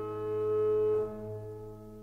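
Meantone-tuned Scherer pipe organ holding a full chord, which is released about a second in, leaving a few lower notes that fade away.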